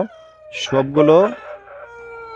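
A flock of chickens calling in a crowded poultry house. In the second half one long call holds on, slowly falling in pitch.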